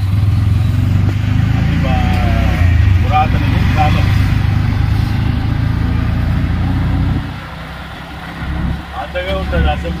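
Auto-rickshaw's small engine running with a loud, rapidly pulsing low drone, heard from inside the open passenger cabin. About seven seconds in the drone falls noticeably quieter.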